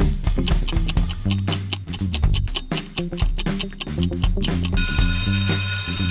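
Quiz countdown timer effect: a clock ticking about four times a second over a backing music track. About five seconds in, an alarm-clock ring takes over, signalling that time is up.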